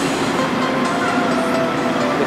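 A heavy lorry passing very close by: a loud, steady rush of engine and tyre noise.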